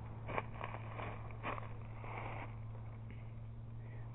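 Faint footsteps through dry leaves and twigs on rocky ground, a few separate steps, over a steady low hum.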